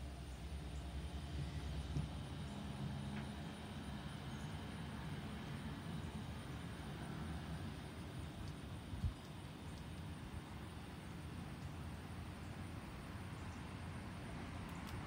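Low, steady rumble of a passing motor vehicle, strongest in the first few seconds, with a single soft click about nine seconds in.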